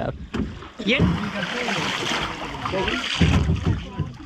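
Steady rushing hiss of water and wind around a wooden rowboat moving on the river, with faint voices underneath. Heavy low buffeting of wind on the microphone comes in the last second.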